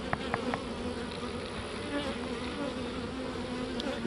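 Honey bees buzzing around a comb frame, a steady hum, with three light clicks near the start.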